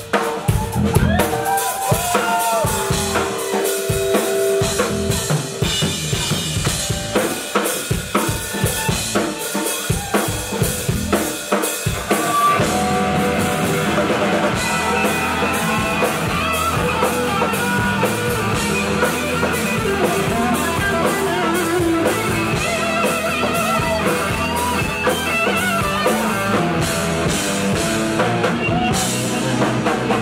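Punk band playing live: a drum kit with snare, bass drum and cymbals hit hard under electric guitar. The music is choppy at first and settles into a fuller, steady drive about twelve seconds in.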